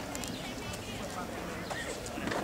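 Footsteps of a crowd of marchers walking on an asphalt street, mixed with scattered chatter of voices.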